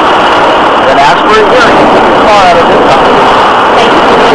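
Indistinct voices talking under a loud, steady background noise.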